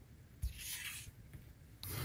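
A craft knife and steel ruler working a paper pattern on a cutting mat: a light knock about half a second in, a short scrape of the paper being shifted, then the blade starting a stroke along the ruler through the paper near the end.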